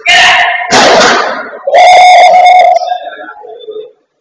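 Loud sounds of padel play, clipping the microphone: two sharp hits about 0.7 s apart, then a held shout of about a second that trails off.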